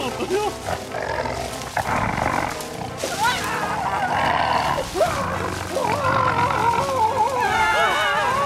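Wordless cartoon character voices vocalizing over background music, their pitch sliding up and down, busiest near the end.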